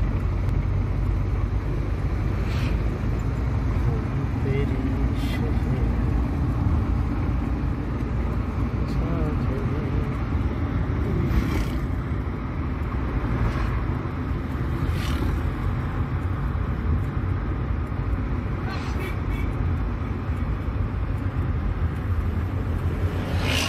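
Steady engine and road rumble heard from inside the cabin of a vehicle driving along a mountain road. Short knocks come through now and then, several times.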